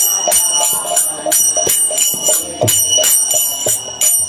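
Kirtan music: small brass hand cymbals (karatalas) striking a steady beat of about three strikes a second and ringing, over a drum and a held melodic tone.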